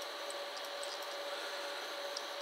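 Room tone: a steady faint hiss with a thin, steady hum and no other sound.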